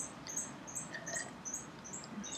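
Faint high chirps repeating evenly, about three a second, from a small chirping animal in the background.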